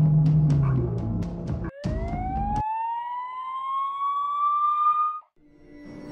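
Dark soundtrack music with a quick ticking beat breaks off just under two seconds in. A single siren tone then winds up, rising steadily in pitch for about three seconds before cutting off suddenly.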